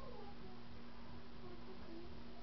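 A faint short cry, like a cat's meow, falling in pitch right at the start, over a steady low hum.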